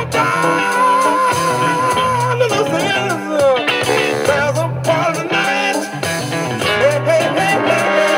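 Jazz-funk recording playing: a repeating bass line and drums under a lead line that holds one long wavering note near the start, then moves on in shorter phrases.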